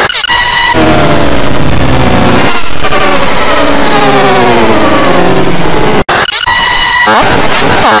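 Loud, heavily distorted and pitch-warped electronic audio effect, blaring like a horn, with a wavering voice-like pitch running through it. It opens with a short steady tone, cuts off suddenly about six seconds in, and gives way to more steady buzzing tones.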